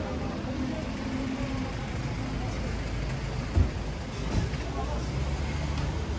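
Street sound with a motor vehicle engine running close by and indistinct voices of passers-by. A single sharp knock comes about three and a half seconds in, and the engine rumble grows louder toward the end.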